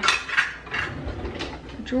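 Metal kitchen utensils clattering in an open drawer as someone rummages for a measuring cup: a few sharp clinks in the first half second, then softer rattling.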